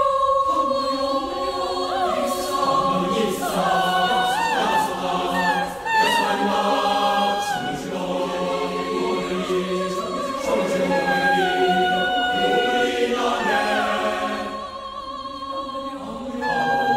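A mixed school choir singing a cappella in full chords, holding long notes with sliding pitch ornaments. The singing grows softer near the end.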